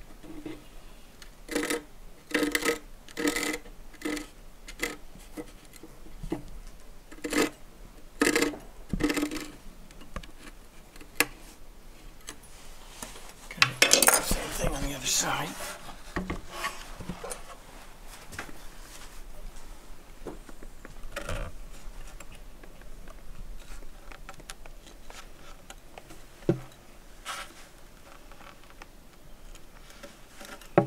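Metal dividers and small tools handled against wood: a run of short clicks and knocks, then a louder scraping rattle about fourteen seconds in, followed by scattered small clicks.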